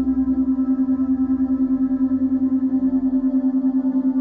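Ambient meditation background music: a steady drone held on one low note with a stack of overtones, pulsing fast and evenly.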